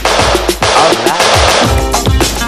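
Classic disco record playing from vinyl through a DJ mixer, with a steady beat. A dense hissing wash covers the first second and a half.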